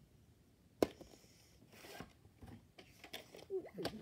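A VHS tape and its case being handled: a sharp click about a second in, the loudest sound, then lighter clicks and rustling.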